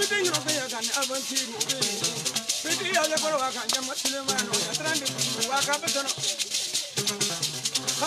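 Men singing in wavering, ornamented melodic lines over a fast, continuous shaker rattle, with a small skin-covered lute being played underneath.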